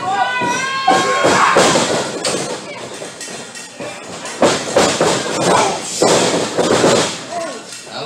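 Wrestlers' bodies hitting the wrestling ring's canvas and ropes: several heavy thuds in the second half as one man is taken down, over a crowd shouting.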